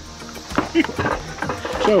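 Men laughing and talking in short snatches, with a few light knocks as a plastic float valve is handled over a water tank.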